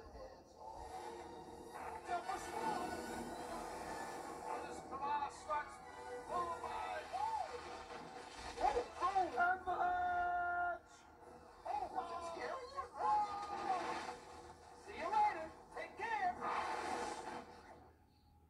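A ride film's soundtrack playing from a television: music under excited voices, with a shout of "Avalanche!" midway.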